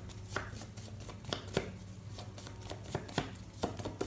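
A deck of angel oracle cards being shuffled by hand, with about six sharp, irregular card snaps and taps, over a low steady hum.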